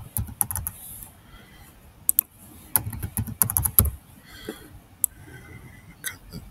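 Computer keyboard typing in several short bursts of key clicks, with pauses between them.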